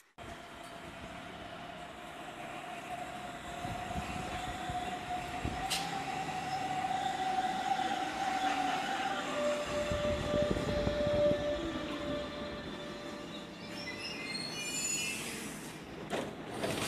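Hamburg S-Bahn electric train pulling into a station and braking to a stop. A steady whine steps slightly lower in pitch about nine seconds in and fades, and a few short high squeals come near the end as it halts.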